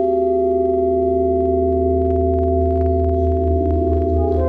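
Tenor saxophone blended with live electronics into a drone of several held tones over a low, slightly pulsing hum. Near the end the middle tones begin to waver.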